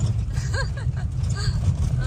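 Steady low rumble of a camper van driving on a gravel road, tyre and engine noise heard from inside the cab.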